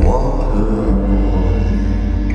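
Live band music in a slow song: a loud chord struck right at the start rings on over a deep, sustained bass, with acoustic guitar in the mix.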